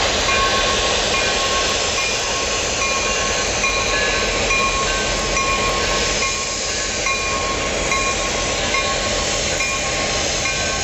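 Pair of EMD diesel switcher locomotives, an SW14 and an SW1001, running as they move a cut of freight cars along the track. Brief high-pitched tones recur over the steady diesel and rail noise every second or so.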